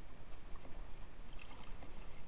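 Kayak paddle strokes, the blades dipping and splashing in the water, over a steady low rumble. The splashing grows louder near the end.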